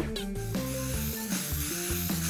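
Steady spraying hiss of paint blown out of a vacuum cleaner hose run in reverse, under background music.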